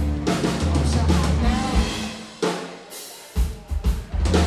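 Live rock trio of electric guitar, bass guitar and a Sonor drum kit playing an instrumental passage with no vocals. About two and a half seconds in the band stops on a hit and the low end drops out, leaving a fading ring, then a few sharp drum hits come in near the end.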